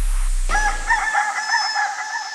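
A rooster crowing, used as a sample in a hip hop remix: one long crow that rises in about half a second in and holds with a slight waver, while the beat's low bass note fades out underneath in the first second.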